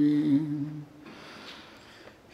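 A man's chanted Arabic recitation: one long held note that breaks off a little under a second in, followed by a pause with only quiet room tone.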